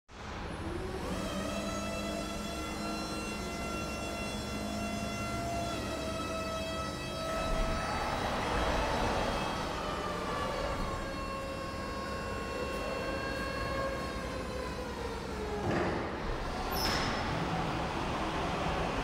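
Jungheinrich EFG 540k electric forklift's hydraulic pump motor whining steadily as the mast raises the forks, its pitch shifting a few times. The whine stops near the end, followed by a brief high squeak.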